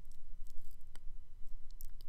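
A steady low hum with a few faint, sharp clicks spread through it.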